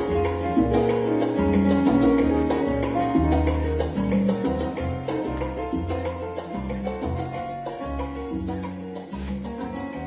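Instrumental passage played on an electronic arranger keyboard: a moving bass line and chords over a steady fast percussion beat from the keyboard's accompaniment, gradually getting quieter through the second half as the song winds down.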